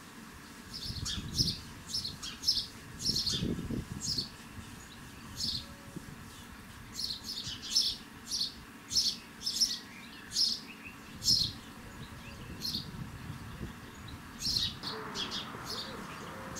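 House sparrow chirping: a long run of short, sharp chirps, often in quick twos and threes, from about a second in until near the end.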